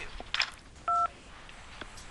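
A single touch-tone (DTMF) keypad beep, two steady tones together lasting about a fifth of a second, about a second in. It is a menu keypress answering an automated phone system's "press 1 / press 2" confirmation prompt.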